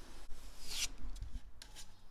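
Metal putty knife scraping wood filler into nail holes on a plywood drawer side: soft, faint scrapes, one stroke louder just under a second in.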